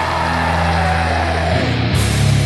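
Stoner doom metal: heavily distorted electric guitars and bass sustaining a low chord, moving to a new chord about one and a half seconds in.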